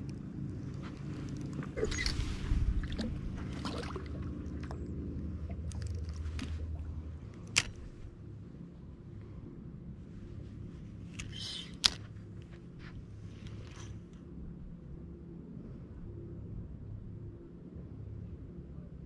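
Bow-mounted electric trolling motor humming steadily, louder for the first seven seconds or so and then quieter. A few sharp knocks, the loudest about halfway through and about two-thirds through.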